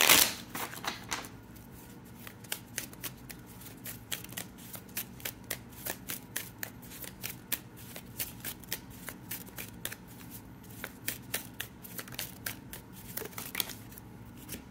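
A tarot deck being shuffled by hand: a loud burst of cards right at the start, then a long run of quick card clicks and snaps, about three or four a second.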